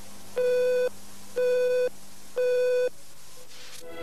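Three electronic beeps, one per second, each about half a second long and held on one steady tone, with a faint click near the end.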